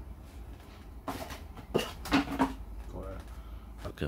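A few short knocks and clicks of handling, the loudest cluster about two seconds in and one more near the end, over a steady low room hum.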